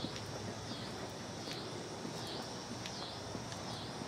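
Faint outdoor ambience dominated by a steady, high insect chorus that swells and dips in a slow regular pulse, about once a second, with a few faint clicks.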